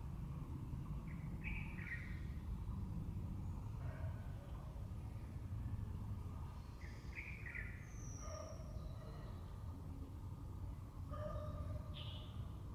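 A few short, faint bird chirps, at about 1.5 seconds, about 7 to 8 seconds with a high falling note, and again near the end, over a steady low rumble.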